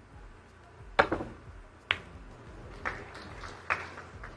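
Snooker shot: a sharp click of the cue tip striking the cue ball about a second in, then three more clicks over the next three seconds as the cue ball hits a red and balls knock off the cushions.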